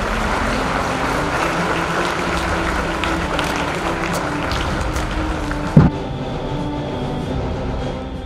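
Background music with a crowd applauding over it; the clapping ends in a single sharp thump about six seconds in, and the music then carries on alone.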